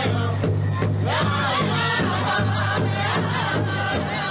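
Soundtrack music from the end credits of a Klamath Tribes documentary: a group of voices singing and chanting in a Native American style over a steady low drum beat.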